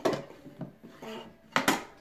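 Small wooden drawer sliding in its dresser-table compartment: a knock as it is pushed shut, light rubbing, then a louder knock and scrape near the end as it is pulled back out.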